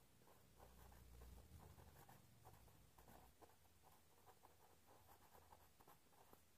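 Very faint scratching of a pen writing on paper: a string of small, irregular strokes as words are written out by hand.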